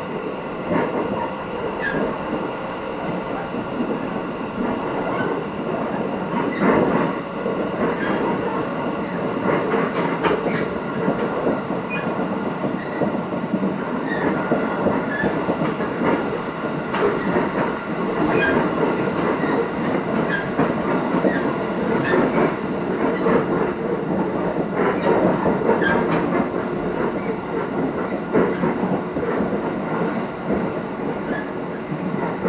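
Running noise inside a passenger car of an electric train under way: a steady rolling rumble with scattered clacks of the wheels over the rail joints and a few faint steady tones.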